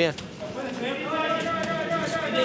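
A person's long drawn-out shout, one held pitch lasting about a second and a half, starting about half a second in.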